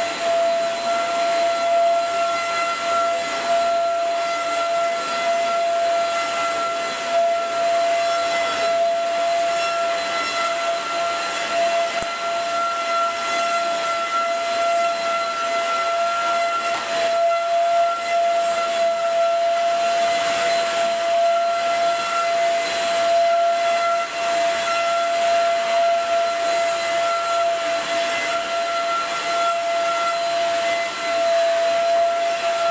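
Alfawise SV-829 700 W corded handheld vacuum cleaner, fitted as a stick with its floor head, running steadily while vacuuming a carpet: a steady motor whine over the rush of air.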